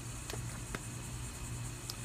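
A pause between speech: a steady low background hum with three faint, short clicks.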